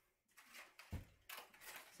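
Faint handling sounds at a table: a soft low knock about a second in, then light rustling of cardboard and a glue gun being handled.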